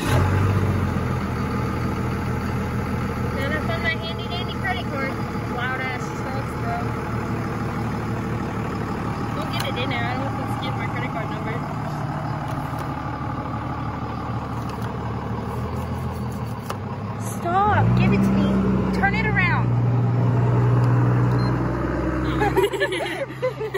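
A motor vehicle engine running nearby with a steady low drone, revving up about three-quarters of the way through and holding at the higher pitch.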